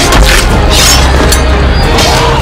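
Sound effects of a medieval melee mixed with a music score: a deep, steady rumble under repeated whooshes and impacts.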